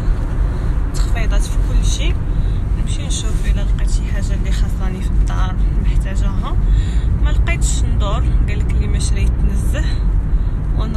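A woman talking over the steady low rumble of a car cabin, the road and engine noise of the car she is riding in.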